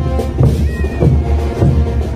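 Festival parade band music with a steady drum beat, a little under two beats a second. Just under a second in, a brief high sliding call rises and falls over the music.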